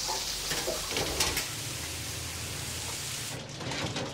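Battered pieces of wolf-fish head sizzling in a deep-fat fryer's hot oil, a steady crackling hiss that cuts off suddenly near the end.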